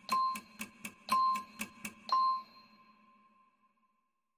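Countdown-timer sound effect: quick ticks about four a second, with a short ringing ding on every fourth tick, once a second. It stops after the third ding, about two seconds in, and the last ding dies away.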